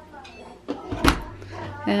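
A dishwasher door swung shut and latched with a single sharp thump about a second in, after a button is pressed to start the wash.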